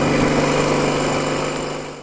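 Ural motorcycle's flat-twin engine running steadily under way, a continuous low hum with road and air noise, fading out near the end.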